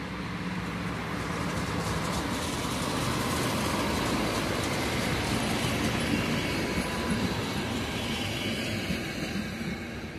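ČD class 842 diesel railcar coupled to a control trailer passing by. A steady engine drone comes first, then the running noise of the wheels on the rails swells to its loudest in the middle and fades as the train goes away.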